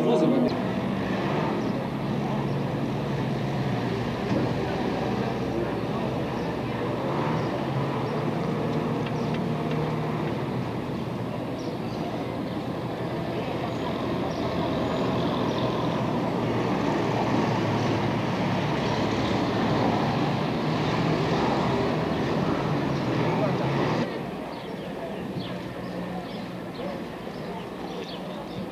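Street noise of many people talking together over a running motor vehicle engine. It gets quieter for the last few seconds.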